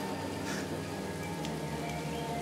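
Background ambience of steady rain, with faint held music tones under it.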